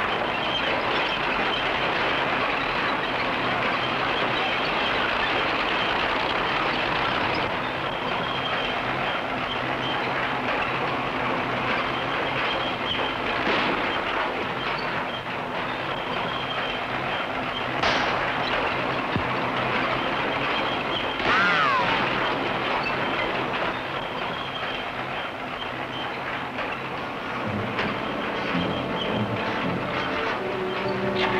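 Crawler bulldozer running and its tracks clattering steadily as it drives, with a few sharp knocks along the way and a short falling squeal about two-thirds of the way through.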